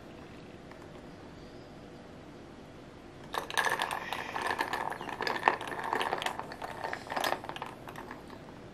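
Metal straw stirring ice cubes in a glass mug of cold coffee: quick clinking and rattling of ice against glass and metal, starting about three seconds in and lasting about four seconds.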